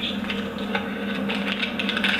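Light clicking and handling of small strap hardware as a paper-crane phone strap is assembled by hand, over a steady low hum.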